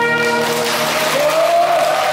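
A saxophone and brass band playing: a held chord gives way to a hissing wash over which one instrument holds a note that slides slowly upward.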